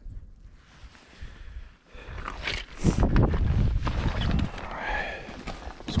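Rumble and rustle of a handheld camera being moved about, with wind buffeting the microphone, starting about two seconds in after a quiet start.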